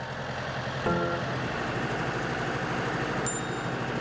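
A farm tractor's engine running steadily, with a low hum under a dense mechanical noise.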